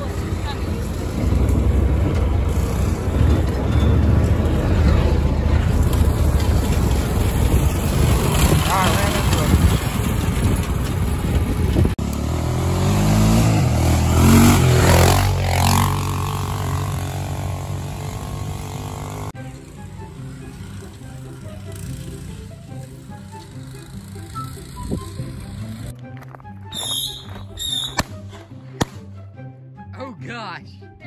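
Small off-road vehicle engine running, with rumble from wind and driving over rough ground, revving up and down around the middle. About two-thirds of the way through it cuts suddenly to background music.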